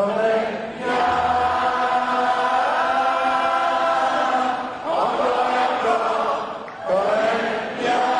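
Many voices chanting together in long held phrases, breaking off briefly about five and seven seconds in, with no instruments clearly playing.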